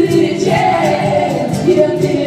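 Live music: a man singing with an acoustic guitar through a PA. A long sung note slides slowly down through the middle.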